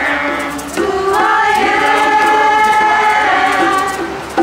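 A mixed community choir of men and women singing in several parts. About a second in, the voices settle onto one long held chord.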